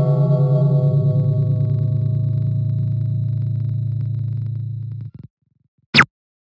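A low, sustained gong-like ringing tone with a fast wavering pulse, fading slowly and cutting off abruptly about five seconds in. A short, sharp hit follows near the end.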